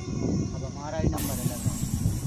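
A boy's voice speaking briefly over a constant low rumble; just over a second in, a steady high hiss cuts in abruptly and holds.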